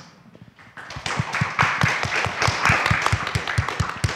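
Audience applauding, starting about a second in, with many separate claps.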